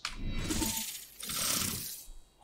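Edited-in transition sound effect: a bright, hissing shimmer in two swells of about a second each, as the picture changes to a title slide.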